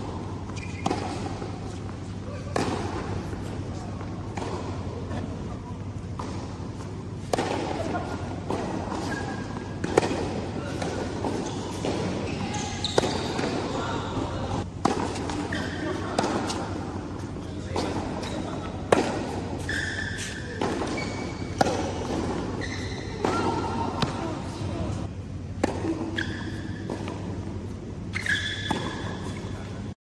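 Indoor tennis rally on a hard court: sharp pops of racket strings striking the ball and the ball bouncing, a second or two apart, mixed with short high squeaks of shoes on the court surface. A steady low hum from the hall runs underneath.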